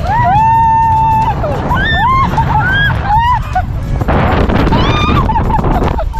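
Women screaming while sliding down a snow tubing hill on an inflatable tube: one long held scream near the start, then several shorter rising-and-falling shrieks, over a steady low rumble of wind and snow from the ride.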